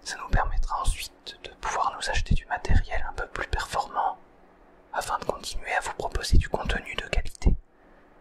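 Whispered French speech in two stretches, with a short pause of about a second in the middle.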